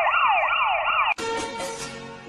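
A siren in quick repeating sweeps, about three a second, that cuts off abruptly about a second in, after which quieter music carries on.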